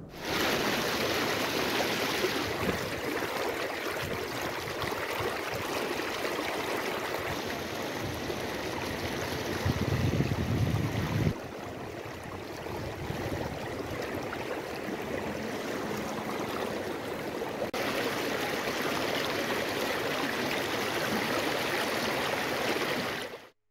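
Swollen floodwater of a river rushing past in a steady roar, with a low rumble swelling about halfway through. The sound changes level abruptly a few times where the footage is cut.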